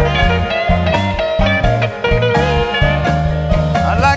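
Electric blues band playing an instrumental passage between vocal lines: electric guitar over electric bass and keyboard.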